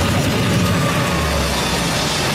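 Soundtrack of an animated action trailer playing: a dense, steady rumble of action sound effects with faint music under it.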